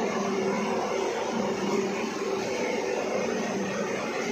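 Rotary salt dryer plant running: a steady mechanical whir from its centrifugal blower and drum, with a steady low hum under it.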